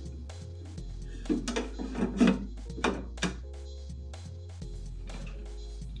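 The Gryphon diamond wet band saw's plastic table tray being slid and set back into place: a handful of short knocks and scrapes, most of them in the middle of the stretch, over steady background music. The saw is not running.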